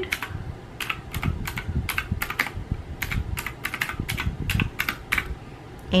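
Keys of a desk calculator with round, typewriter-style keycaps pressed one after another: about eighteen sharp clicks in quick, irregular runs as a column of figures is added up.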